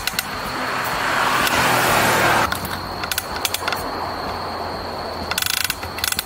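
A bicycle drivetrain clicking over and over as the pedals turn, in scattered runs that grow into a rapid burst near the end. This is a fault that comes from where the crank turns. A loud rushing noise builds over the first two seconds and cuts off suddenly.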